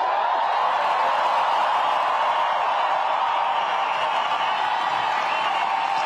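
A large crowd applauding and cheering: a steady, dense wash of clapping and voices.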